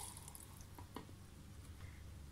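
Green tea being poured into a blender cup trails off right at the start into faint drips, with a few faint short ticks.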